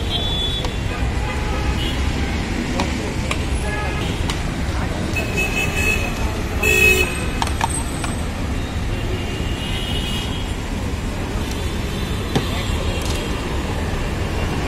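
Steady roadside traffic rumble, with a vehicle horn tooting briefly about halfway through, the loudest sound, and a few fainter horn-like tones and clicks around it.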